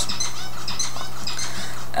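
Small birds chirping: many short, high chirps in quick succession over a steady low hum.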